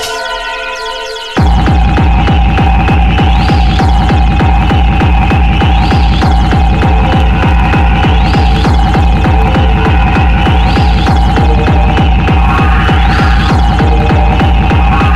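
Hard, dark drum and bass (darkstep/corebass). A thin, high synth passage drops about a second and a half in into a fast, dense kick-drum pattern with heavy bass and a held synth tone. A rising sweep repeats about every two and a half seconds.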